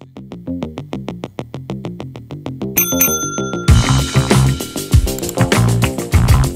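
Instrumental background music: a stepping, plucked-sounding melody, a bell-like ring about three seconds in, then a full drum beat comes in for the rest.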